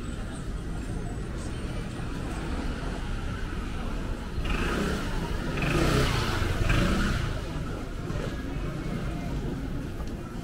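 A motor scooter passes close by, its engine sound swelling from about four and a half seconds in, peaking around six to seven seconds and fading by eight, over steady street crowd noise.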